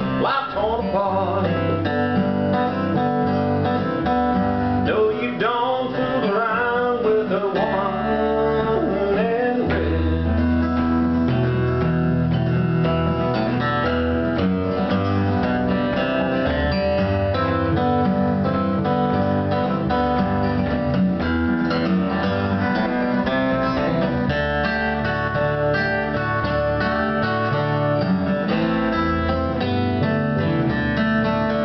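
Acoustic guitar and electric bass playing an instrumental break in a song, with notes sliding up and down in pitch through roughly the first eight seconds.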